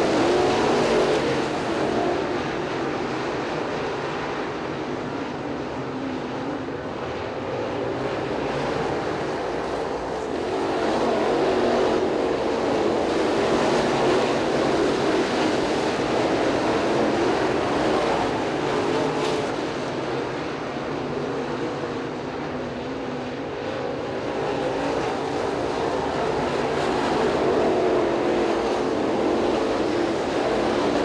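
Crate late model dirt-track race cars running at speed, the V8 engines of the pack swelling and fading as the cars come round and pass.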